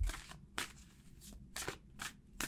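A deck of tarot cards being shuffled by hand: a few short, crisp card flicks at uneven intervals.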